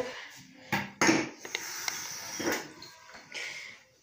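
Handling clatter: a few sharp knocks and clinks of hard objects, among them a glass bottle being picked up.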